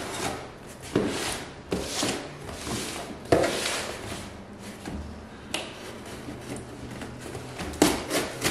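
Knife slitting packing tape on a cardboard box, with rasping scrapes and several sharp knocks as the box is handled and turned on a wooden counter. The loudest knock comes about a third of the way in.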